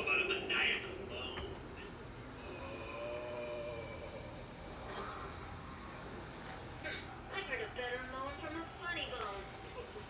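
Wordless cartoon character voice sounds from a projected Halloween ghost animation: a drawn-out wavering vocal sound about three seconds in, then a run of quick vocal sounds from about seven seconds to near the end.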